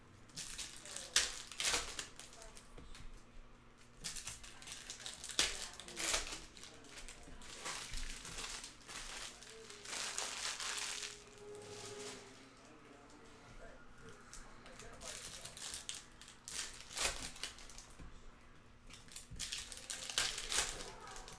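Clear plastic pack wrappers crinkling as packs of baseball cards are opened, mixed with the rustle and slide of cards being handled, in irregular short crackles.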